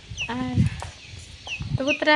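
Domestic chickens clucking, with several short, high chirps that drop in pitch.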